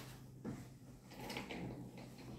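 Faint handling and movement noises as a person gets to an electronic keyboard: a soft thump about half a second in, then a short scraping rustle near the middle, over a steady low hum.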